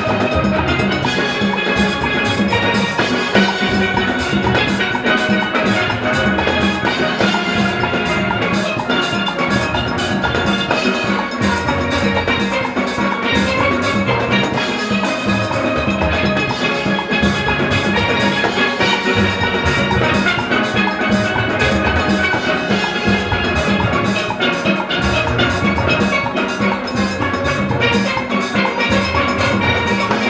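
A full steel band playing: many steelpans ringing out melody and chords together, over a drum kit and hand drums keeping a steady beat.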